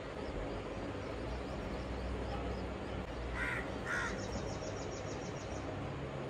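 Outdoor ambience with a steady low rumble, and two short harsh bird calls about half a second apart a little past the middle, followed by a quick run of faint high ticks.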